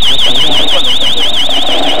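Loud, high-pitched electronic buzzer sounding a rapidly warbling tone, wavering about eight times a second.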